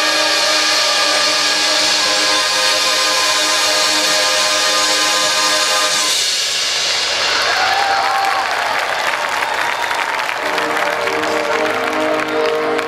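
Marching band brass and winds holding a loud sustained chord that cuts off about six seconds in. Crowd cheering and applause follow, and near the end the band comes back in with quieter held notes.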